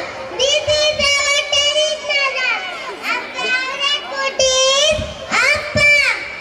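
Young children singing a rhyme into a microphone over a hall sound system, in short high-pitched phrases with brief breaks between them.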